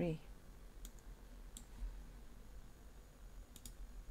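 A few computer mouse clicks over a faint low hum: single clicks about a second in and about a second and a half in, then a quick double click near the end.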